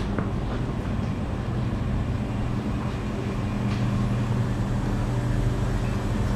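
Steady low mechanical hum of convenience-store refrigerated coolers and air conditioning, with a few faint clicks.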